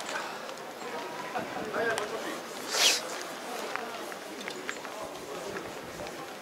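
Indistinct chatter of people talking at a distance, with a short hiss about three seconds in.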